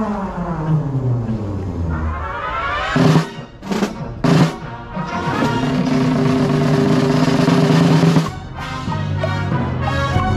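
Drum corps brass and front-ensemble percussion playing: falling pitch glides, then three loud ensemble hits about three to four and a half seconds in. A long held chord follows and cuts off suddenly about eight seconds in, and rhythmic playing picks up near the end.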